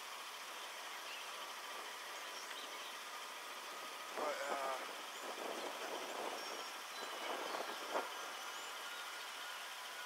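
Steady faint outdoor background noise, with a muffled, indistinct voice speaking in short bursts from about four to eight seconds in.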